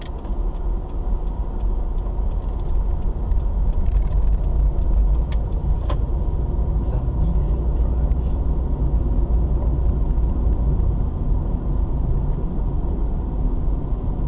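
Car cabin road noise picked up by a windscreen dashcam: a steady low engine and tyre rumble that grows louder over the first few seconds as the car picks up speed, with a few light clicks around the middle.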